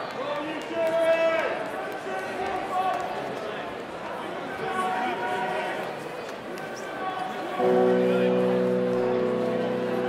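Voices and chatter between songs, then about three-quarters of the way in an amplified electric guitar chord is struck and rings on steadily.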